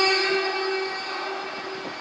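A male Quran reciter's long held note at the end of a recited phrase, heard through a microphone and PA, fading slowly away.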